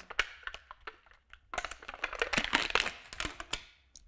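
Sealed lid being peeled off a plastic cottage cheese tub: crinkling and crackling with a few sharp clicks, densest from about one and a half seconds in.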